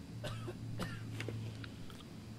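A man making a few short throaty coughs and grunts, over a low steady hum.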